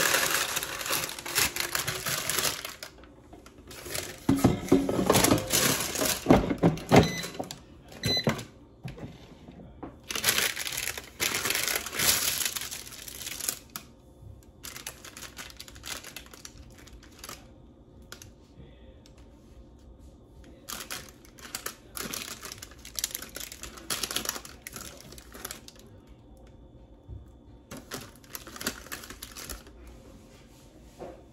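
Parchment paper crinkling and rustling as air-fried mozzarella sticks are tipped out of the basket and pulled apart by hand, in irregular bursts that are loudest in the first half and fainter later.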